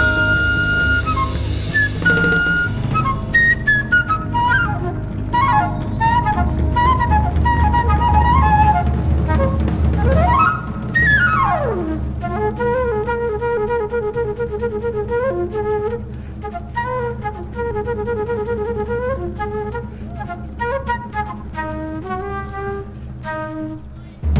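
Jazz flute solo from a live quintet recording, playing fast runs over a low accompaniment, with a long slide down about halfway through followed by rapidly repeated trill-like figures.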